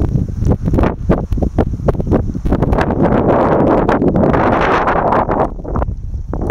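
Wind buffeting the microphone, building to a strong gust through the second half, over crunching footsteps on a gravel trail.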